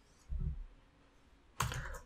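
Two keystrokes on a computer keyboard, a dull one about a third of a second in and a sharper one near the end, as the Enter key adds new blank lines in the code editor.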